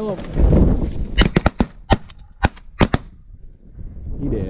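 A volley of about eight shotgun shots from more than one hunter, fired in quick succession over under two seconds, starting just over a second in.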